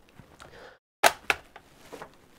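Plastic clips of a laptop's memory access cover clicking loose as the cover is pried off: faint scraping, then two sharp clicks about a second in, a quarter second apart, and a softer click near the end.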